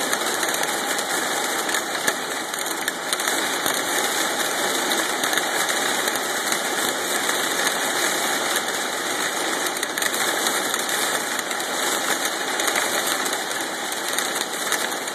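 Hail and heavy rain pelting window glass in a dense, steady clatter of countless small hits, loud enough that the listener says they can't even hear.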